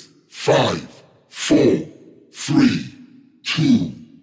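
A voice making breathy sigh-like sounds, repeating evenly about once a second.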